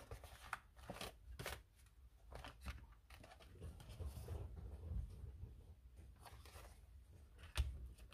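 Faint rustling and soft handling noises of an art journal's stiff painted paper pages as they are picked up, opened and laid back down.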